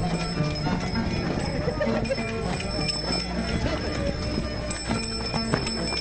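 Live chimaycha dance music between sung verses: strummed strings in a quick, even rhythm over the dancers' rhythmic stepping and the voices of the crowd.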